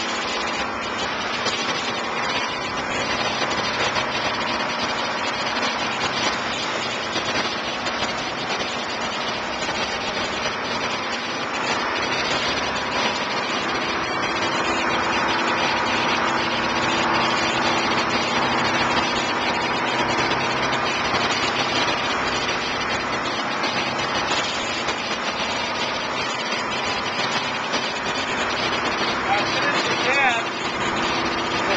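Dive boat under way at speed: its engine running steadily under the constant rush of water churning in the wake.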